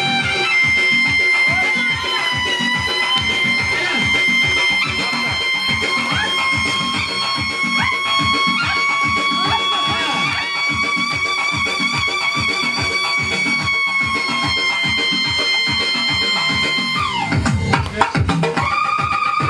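Upbeat dance music with a fast, steady beat under a long held, wavering high melody line. Near the end the melody breaks off with a falling sweep as the track changes.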